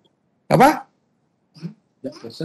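Speech only: a single short spoken word, "apa?", with a rising pitch about half a second in, then a faint brief murmur; otherwise dead silence on the call line.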